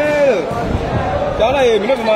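A loud voice calling out twice, drawn-out calls with rising and falling pitch, at the start and again near the end, over the murmur of a crowd in a large hall.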